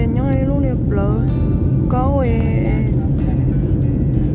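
A voice singing a melody over music, laid over the steady low rumble of an airliner cabin in flight.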